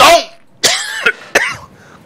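A man coughing twice, in two short bursts about a second apart.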